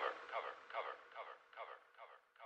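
A thin, radio-like voice sample from an old propaganda film repeating as an echo about two to three times a second, each repeat quieter as it dies away.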